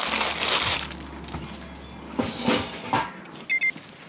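Thin plastic shopping bag being crumpled and folded by hand: a burst of crinkling at the start and another about two seconds in. A short high beep sounds near the end.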